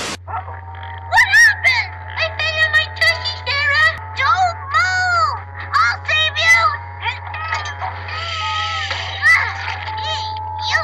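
High-pitched cartoon children's voices wailing and crying out in rising-and-falling cries without clear words, over background music and a steady low hum. The sound starts abruptly after a brief silence.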